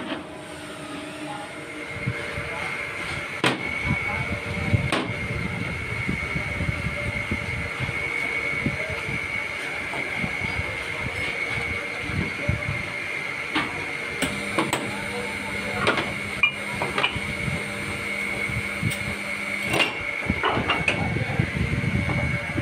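Workshop machinery running with a steady high whine, and a lower hum joining for several seconds in the middle. Scattered sharp metal knocks come from steel mould halves being handled and clamped into the moulding machine.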